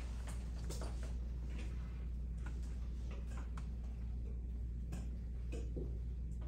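Quiet classroom room tone: a steady low hum with scattered small clicks and taps at irregular intervals.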